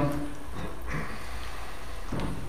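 Room tone in a pause between speakers: a steady low hum under a faint even hiss, with one short faint sound about halfway through.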